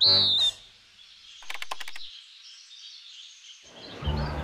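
Birds chirping: a short, bright whistled note at the start, then a quick rattle of about half a dozen clicks a second and a half in, over a faint high hiss.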